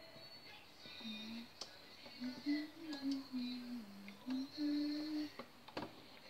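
A woman humming a slow tune in held, stepping notes, with a few sharp clicks of a metal fork against the multicooker's pot, the loudest near the end.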